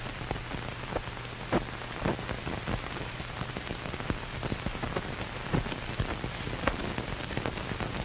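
Surface noise of an old film soundtrack with no programme sound on it: a steady hiss and low hum, broken by irregular crackles and pops several times a second.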